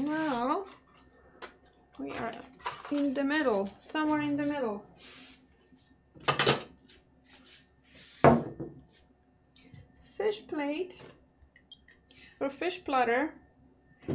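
Bolesławiec stoneware pottery knocking on a wooden counter as pieces are set down and picked up: a sharp ceramic clunk about six and a half seconds in and a louder one just after eight seconds.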